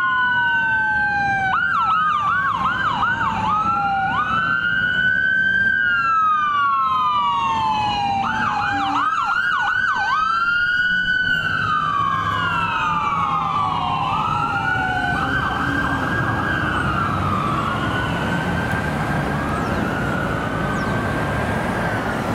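Ambulance electronic siren wailing, rising and falling every few seconds, switching twice to a fast yelp, with a second sweep often running out of step with the first. It grows fainter in the last few seconds as the ambulance moves away, over traffic rumble.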